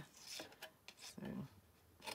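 Faint rustle of a sheet of gold metallic card being handled and shifted on a cutting plate, in the first second.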